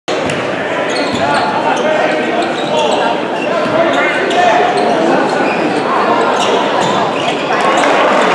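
Basketball dribbled on a hardwood gym floor amid crowd chatter and shouting voices, echoing in a large hall. The crowd noise swells near the end.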